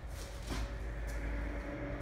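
Feet landing once on a rubber gym floor, a short soft thump about half a second in, over a steady low room hum.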